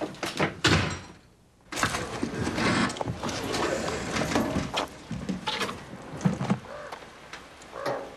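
A door thuds in the first second; after a brief quiet gap come scraping and knocking as a well's cover is pulled off the top of the casing.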